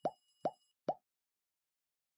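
Three short, bubbly 'bloop' pop sound effects about half a second apart, each rising quickly in pitch, part of an animated end-screen graphic.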